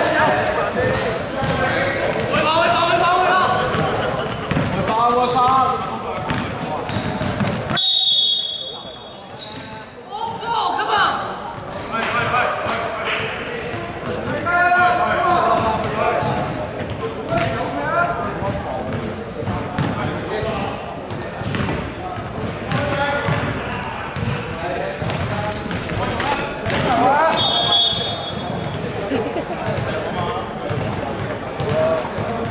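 Indoor basketball game: a ball bouncing on a wooden court and players calling out, echoing in a large sports hall. Short high referee-whistle blasts come about eight seconds in and again near the end.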